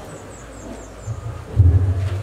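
Low rumbling bursts of breath or handling noise on a handheld microphone held close to the mouth, starting about a second in and loudest near the end.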